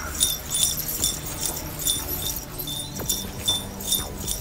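Small metal pieces jingling in quick irregular shakes, about four or five a second, with a bright ring.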